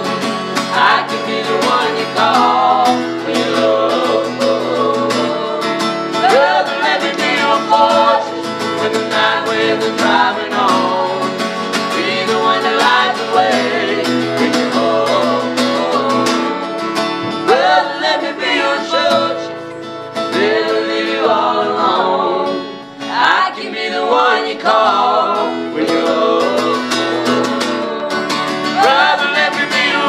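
Acoustic guitar strummed as accompaniment while a man and a woman sing together.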